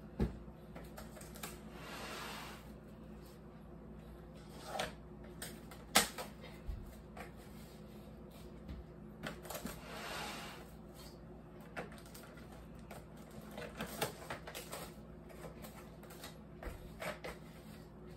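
Plastic cling film pulled from its box and handled over a metal mixing bowl: two stretches of soft rustling, about two seconds in and about ten seconds in, among scattered clicks and taps.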